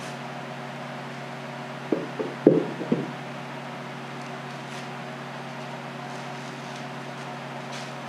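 A few short wooden knocks about two to three seconds in as a wooden beehive box is handled and set down on a workbench, over a steady machine hum.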